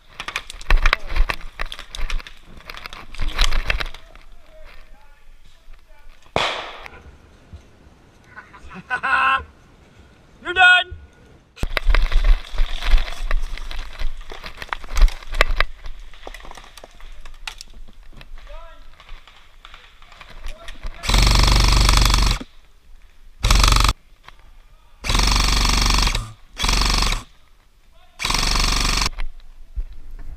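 Crackling and rustling in dry leaf litter. Near the end come four bursts of full-auto fire from an airsoft electric rifle (AEG), each lasting half a second to a second and a half.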